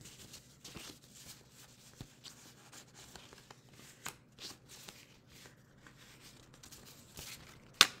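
A small stack of ten flash cards being shuffled by hand: soft, irregular rustles and light flicks of card against card, with one sharper, louder click near the end.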